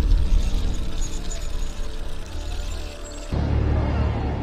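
Dark, ominous film score built on a low rumbling drone that slowly fades, then gives way abruptly to a new, louder low drone a little after three seconds in.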